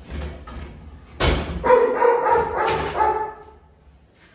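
A dog barking at feeding time: a sudden loud bang about a second in, then a rapid run of barks lasting about two seconds.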